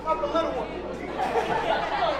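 Indistinct voices talking and chattering in a large hall, with no single speaker clear.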